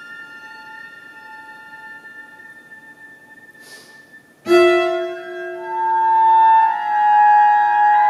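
Chamber ensemble of strings and winds playing contemporary classical music: quiet held tones, then a sudden loud accented chord about halfway through, followed by sustained chords that swell.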